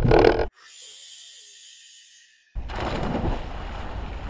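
Splashing as two swimmers plunge off a wooden pier into cold winter sea water, with grunting shouts. A sudden loud burst about half a second in gives way to a faint hiss for about two seconds, then water churning and wind noise on the microphone return.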